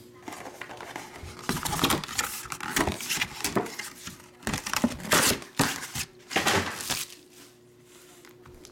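Foil trading-card pack wrappers crinkling in a string of short, sharp rustles as a stack of packs is handled and squared on a table, going quieter in the last second.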